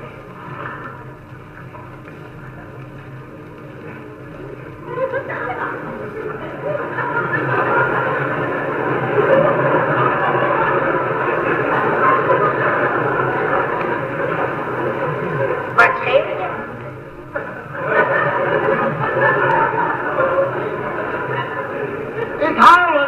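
Theatre audience laughing, swelling from about four seconds in to a long loud burst, dipping briefly near the end and rising again, heard through the noise of an old 1930s recording.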